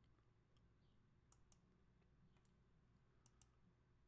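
Near silence with faint sharp clicks, two pairs of them: one pair about a second in, another near the end.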